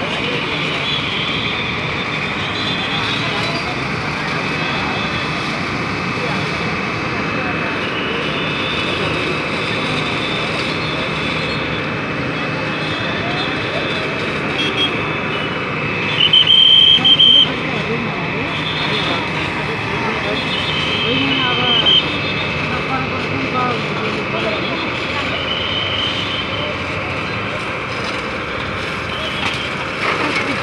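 Fire engine's motor running steadily under the chatter of an onlooking crowd, with a brief shrill high tone, the loudest sound, about sixteen seconds in.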